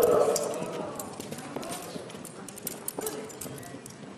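Yearling colt's hooves clip-clopping as it is led at a walk, a scatter of separate hoof strikes.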